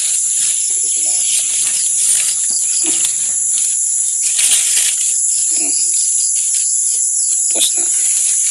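A loud, steady, high-pitched insect chorus drones without a break.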